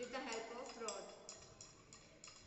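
A stirring rod clinking against the side of a beaker while slaked lime solution is stirred, about three light clinks a second. A voice is heard over it during the first second.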